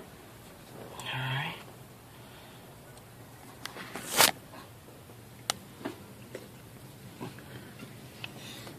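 Metal clinks and knocks from a turbocharger being set back into a diesel engine's valley, with one loud sharp clank about four seconds in and several lighter clicks after it. A short grunt is heard about a second in.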